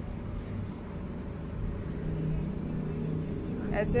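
Low, steady rumbling background noise with a faint hum, under a pause in a narrator's voice; the voice comes back near the end.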